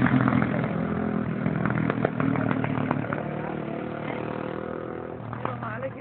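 A vehicle engine running steadily and growing fainter, with voices in the background.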